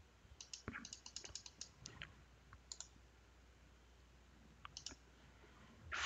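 Faint computer clicks: a quick run of about a dozen short clicks in the first few seconds and two more near the end, as a question image is selected and pasted onto a digital whiteboard.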